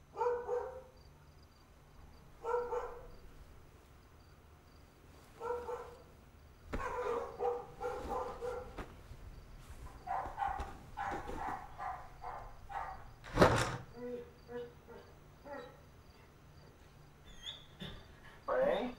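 A dog barking: single barks a couple of seconds apart, then a run of quicker barking, with the loudest, sharpest one about thirteen seconds in. A faint, steady chirping of crickets runs underneath.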